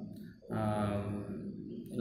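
A man's voice holding one long, steady-pitched filler sound ("uhh") after a brief pause about half a second in.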